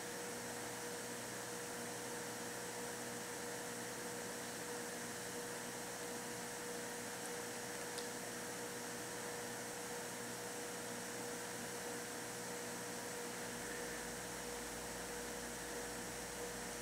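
Steady electrical hum with a faint hiss, the room tone of a quiet church, with one faint tick about eight seconds in.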